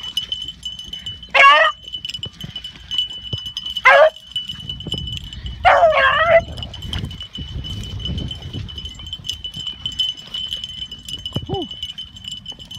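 Hunting beagles baying on a rabbit's line: three loud, short howling barks about a second and a half, four and six seconds in, the last one the longest.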